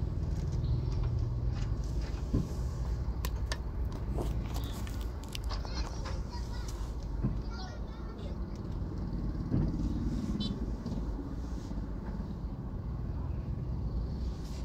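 Steady low rumble of a car engine and road noise heard from inside the cabin while crawling in slow traffic, with indistinct voices and a few sharp clicks over it.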